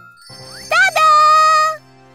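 Cartoon 'ta-da' reveal sound effect: a twinkling jingle with a loud bright note that slides up, holds for about a second, then cuts off.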